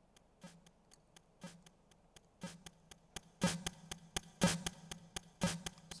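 Teenage Engineering Pocket Operator pocket synthesizer playing a programmed drum beat. It has a low kick about once a second with lighter hat-like ticks between, and it grows louder and fuller as parts are added.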